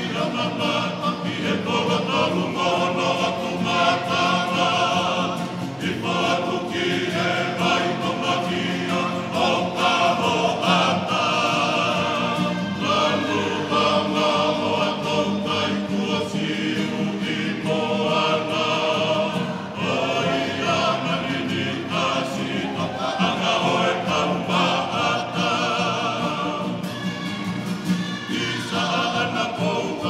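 Choir singing, many voices together in harmony, in long sung phrases.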